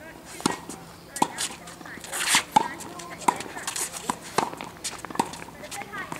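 Tennis rally on a hard court: racket strings striking the ball about six times, roughly a second apart, each hit a sharp pop with a short ring. A shoe scuffs on the court surface about halfway through.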